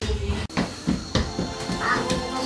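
Busy room sound at a children's party: about four short knocks and a brief high squeal near the end.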